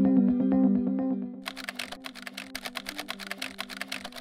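Typing sound effect: a fast run of keyboard clicks as on-screen text is typed out, starting about a second and a half in. Underneath, a soft synthesizer music bed fades away in the first second.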